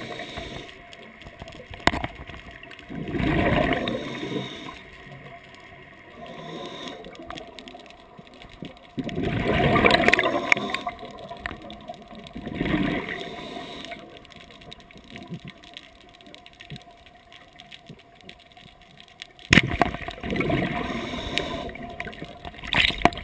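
Underwater sound heard through a camera housing: water rushing and gurgling in several irregular swells, with quieter stretches between. A single sharp knock near the end is the loudest sound.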